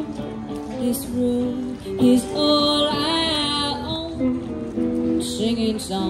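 Live acoustic music: a woman singing a held, wavering melody over a strummed acoustic guitar, with electric guitar accompaniment.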